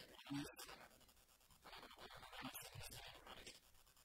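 Near silence: a man's voice, faint and muffled, speaking in short broken phrases over a hiss.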